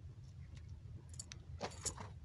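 Faint clicks and rustling from a small freshly caught fish and tackle being handled, with a louder rustle near the end, over a steady low rumble.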